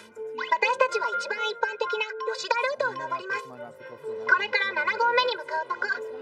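Anime character dialogue in Japanese, spoken over soft background music.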